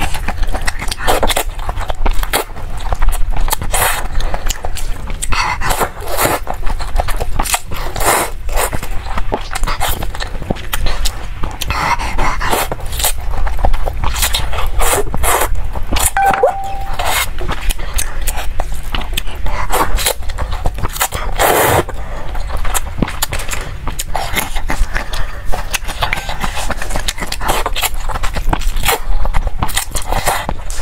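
Close-miked slurping and chewing of noodles in chili broth: quick wet slurps and mouth smacks, one after another.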